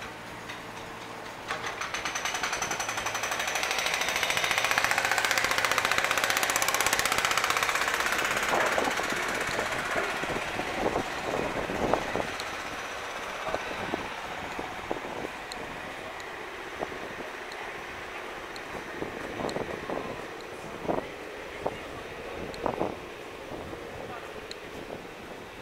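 Road-works machinery, a jackhammer-like breaker, hammering rapidly. It grows louder over a few seconds, then fades away.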